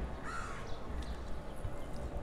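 A bird calls once, a short harsh falling call about a quarter second in, over a steady low background rumble.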